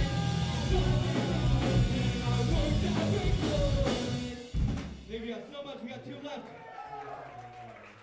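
Live pop-punk band playing loud, with drums, distorted electric guitars and shouted vocals. The song ends with a final hit about four and a half seconds in; the guitars then ring out under scattered voices.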